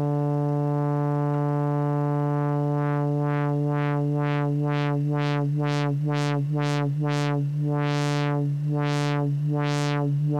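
A sustained sawtooth-wave synthesizer note through a Synthesizers.com Q150 transistor ladder filter, its cutoff swept by a low frequency oscillator. About three seconds in the tone begins a regular wah-like pulsing, about three sweeps a second, that slows to under one a second as the sweeps open brighter near the end.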